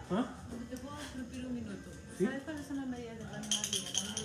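Mostly a voice talking. Near the end comes a short, rapid, high-pitched rattle of salt being shaken from a shaker.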